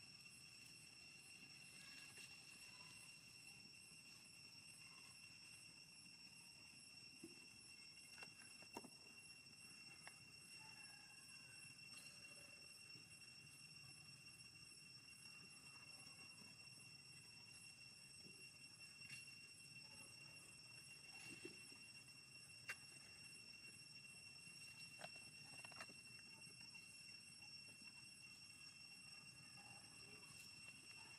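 Near silence: faint outdoor ambience with a steady high tone and a few scattered faint ticks.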